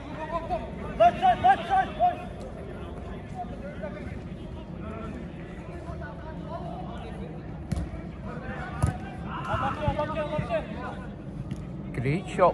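Players shouting and calling to each other during a five-a-side football game, with loud calls about one to two seconds in and again near ten seconds. Two sharp knocks from play on the pitch come about eight and nine seconds in.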